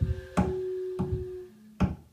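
Improvised music on a Yamaha CP-70 electric grand piano and a blown organ pipe: sharp knocking strikes about four times in two seconds, with a steady held tone for about a second between them.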